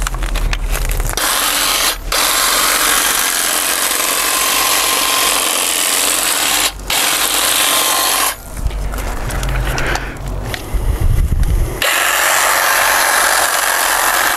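Hedge trimmer running while shearing thuja foliage, its reciprocating blades chattering. It runs in long bursts with brief breaks about two and seven seconds in, and sounds rougher, with a lower rumble, between about eight and twelve seconds in.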